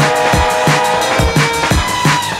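Drum and bass music from a DJ set: a fast beat with deep kick drums about three times a second under held, steady notes.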